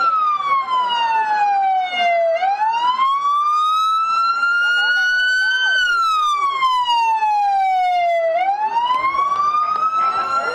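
Emergency vehicle siren sounding a slow wail, its pitch falling and rising again about every six seconds. A fainter second siren is heard under it early on.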